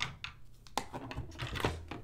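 Irregular light clicks and knocks of hard plastic as a robot vacuum's blower fan housing and plastic base shell are handled and tilted.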